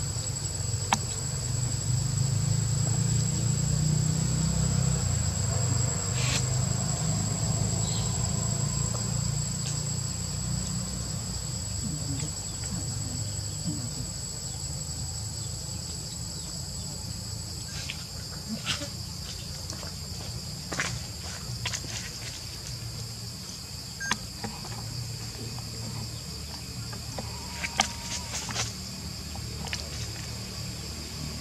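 Steady, high-pitched drone of insects, the higher of its two tones stopping about halfway through, over a low rumble. A few short clicks come in the second half.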